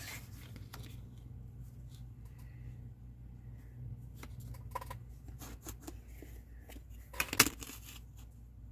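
Light rustling and tapping as a stiff cardboard strip is handled and pressed flat on a cutting mat. Near the end a clear acrylic ruler is set down on it with a short, sharp clatter, the loudest sound here.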